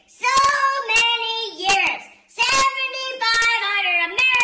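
A person's high-pitched voice singing wordlessly in long held, wavering notes: two phrases with a brief break about two seconds in.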